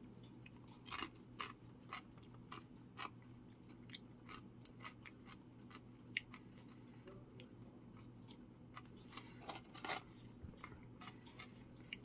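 A person chewing a crunchy tortilla chip: faint, irregular crunches, a few of them sharper and louder.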